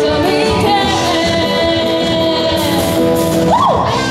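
A live band playing a pop-rock song: drum kit with cymbals under guitars and keyboard, with a wavering lead melody that slides up and back down near the end.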